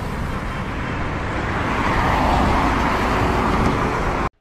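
Logo-intro sound effect: a steady rushing noise like a car driving by, which swells a little toward the middle.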